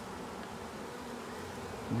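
A mass of honey bees from a package colony buzzing in a steady, even hum.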